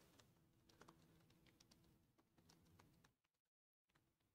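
Very faint typing on a computer keyboard: a run of light, irregular keystrokes, with a short complete dropout near the end.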